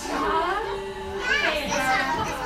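Young children's voices and chatter, with high, gliding calls near the end.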